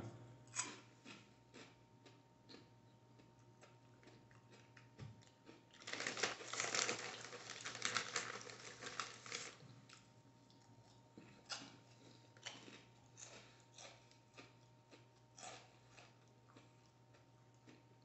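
A person chewing Doritos 3D Crunch puffed corn chips: faint, irregular crunching, densest for a few seconds in the middle, then scattered single crunches.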